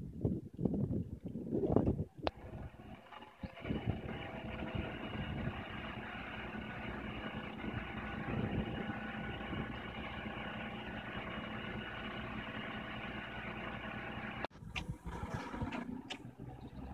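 A city bus engine idling steadily, a low, even drone that cuts off abruptly near the end. It comes after a couple of seconds of low irregular rumbling and a single click.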